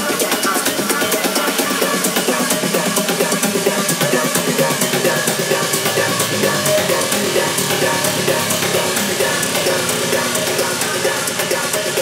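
House music from a DJ set played over a club sound system: a steady, driving drum beat with kick and hi-hats under layered synth tones, running on without a break.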